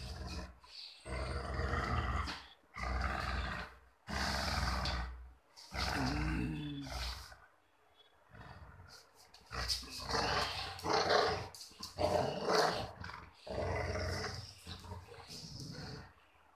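Golden retriever play-growling in repeated bursts of a second or so while tugging on a rope toy, a playful rather than aggressive growl. The growls ease off about halfway, then come back louder.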